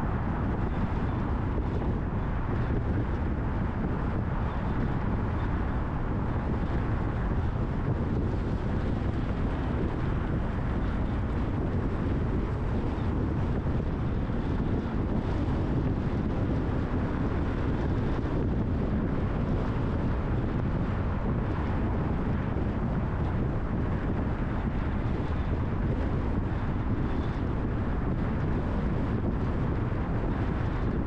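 Steady low rumble of a car driving along a city street, road and tyre noise with a constant wash of traffic.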